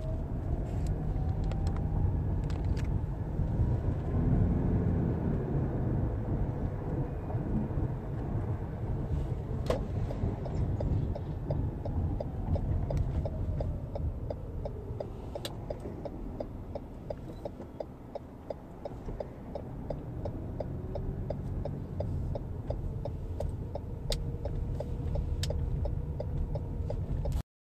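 A car's road and engine rumble heard from inside the cabin while driving, its pitch gliding slowly as the speed changes and easing for a few seconds near two-thirds of the way through. From about halfway through, a regular fast ticking runs alongside it.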